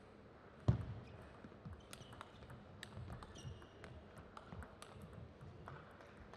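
Table tennis rally: the celluloid ball clicking off rubber paddles and the table in quick, uneven succession, starting with a sharp knock about a second in, with a few short high squeaks among the clicks.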